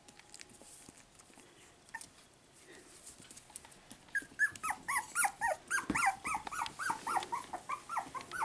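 Cavapoo puppy whining in a quick run of short, high cries, about three a second, starting about halfway through.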